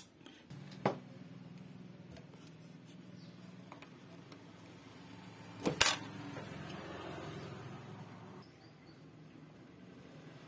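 Air pump of a Quick 850A hot-air rework station running with a steady low hum, set to its lowest airflow. There is a click about a second in and a louder handling knock just before six seconds, and the hum eases off after about eight seconds.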